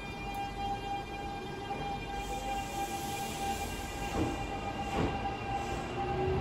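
Train at a station platform: a steady high-pitched tone holds for about five seconds over a hiss, with two brief rushes of noise near the end.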